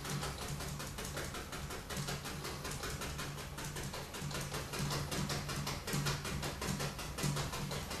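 Bristle brush dabbing paint onto canvas in rapid light taps, several a second, stippling in a line of trees.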